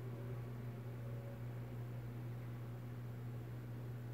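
A steady low hum over a faint even hiss, unchanging throughout, with no distinct handling or tape sounds standing out.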